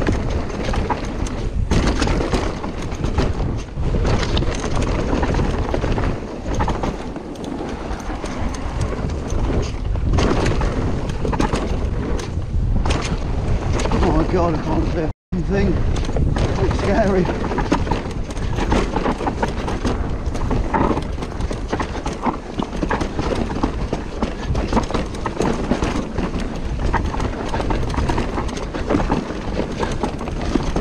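Mountain bike descending a dry, dusty dirt trail, heard from a camera on the rider: tyre noise on loose dirt, rattling and knocks from the bike over roots and bumps, and wind on the microphone. The sound cuts out for a moment about halfway through.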